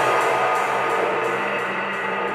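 Breakdown of a drum and bass track: the heavy bass has dropped out, leaving a sustained synth chord that slowly fades, with faint, regular ticking up high.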